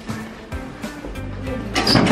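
Background music, with a few light knocks and a loud noisy scrape or rustle near the end.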